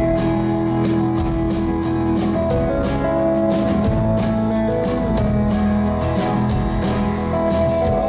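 Live band playing an instrumental passage: strummed acoustic guitar over long held notes from a bowed cello, with drums and cymbals keeping time.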